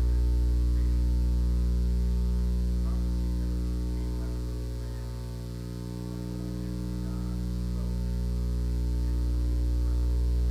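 Steady electrical mains hum with a ladder of overtones from the recording or sound system, dipping in level around the middle and then coming back. A faint, distant voice sits underneath.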